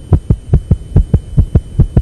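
Simulated dog heart sounds played through speakers inside the chest of a veterinary training mannequin: a fast, regular heartbeat.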